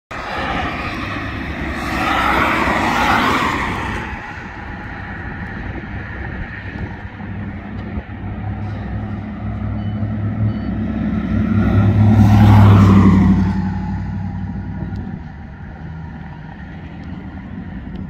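Passing road traffic on a wet street: tyre hiss swelling and fading as vehicles go by, twice, about two to four seconds in and again around twelve to thirteen seconds. A low engine hum is strongest during the second pass.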